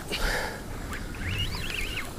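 Rushing water from a moving boat's wake mixed with wind and a low steady rumble, with faint wavering high-pitched sounds in the second half.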